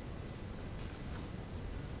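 Room tone of a theatre: a steady low hum with three brief, faint high hisses in the first half.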